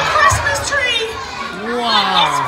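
A crowd of young children's voices shouting and calling over one another in a large hall.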